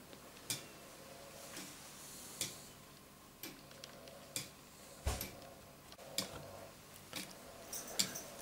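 A Meccano foliot-and-verge clock escapement ticking faintly, with single sharp clicks about once a second. Each tick is the spring-clip pallets catching and releasing the bolt teeth of the 11-tooth escapement wheel.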